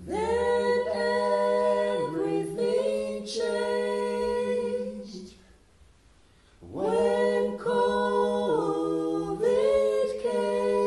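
Unaccompanied voices singing: a held low note with a slow melody moving above it, in two phrases with a pause of about a second and a half between them.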